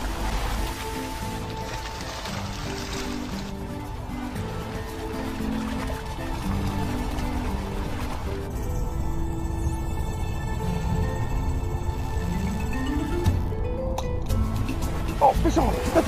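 Background music: a song with singing.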